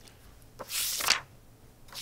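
A book page being turned: one brief papery swish about halfway through.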